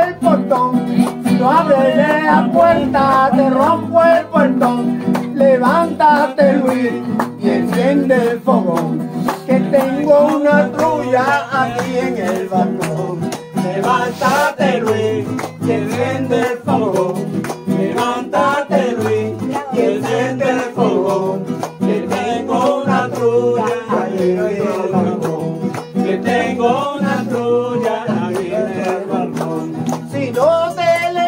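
Two acoustic guitars played together in Puerto Rican folk music, one strumming the chords and the other picking a high melody, with a man singing over them.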